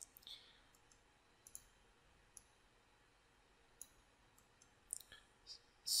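Faint computer mouse clicks, about half a dozen scattered irregularly, with a few close together near the end, over near silence.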